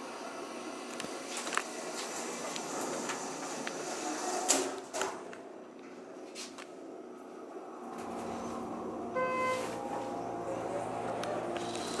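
Inside the car of a Schindler 330A hydraulic elevator: a knock about four and a half seconds in, then from about eight seconds a low steady hum as the car runs. About a second after the hum starts, a short electronic tone sounds.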